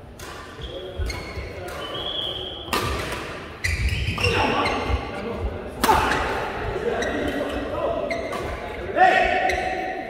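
Badminton rally: several sharp racket strikes on the shuttlecock, about three, six and nine seconds in, with sneakers squeaking on the court floor, echoing in a large hall.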